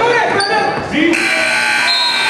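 A steady electronic buzzer starts about a second in and holds, over children's voices and shouting echoing in a large gym.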